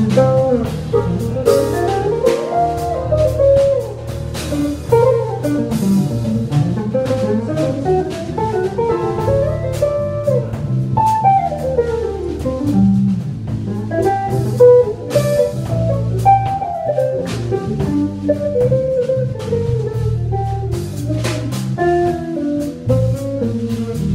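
Small jazz band playing live: a fast single-note electric guitar line running up and down over electric bass and a drum kit with frequent cymbal hits.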